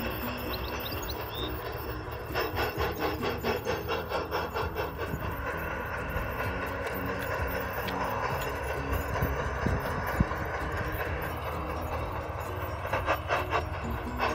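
A model steam train running on outdoor garden-railway track, with runs of rhythmic clicking from the wheels, about five clicks a second, a few seconds in and again near the end. Background music plays underneath.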